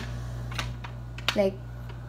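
A few faint light clicks and taps in the first second, over a steady low hum.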